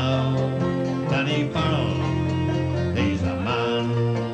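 Irish folk band playing live: fiddle and strummed acoustic guitar together.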